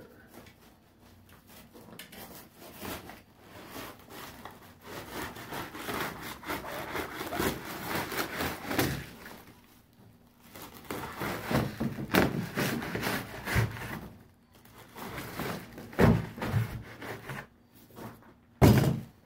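Utility knife slicing through a black plastic bag and the foam packing inside it, with plastic crinkling and foam scraping and tearing in irregular bouts. There are short pauses and a few sharper knocks.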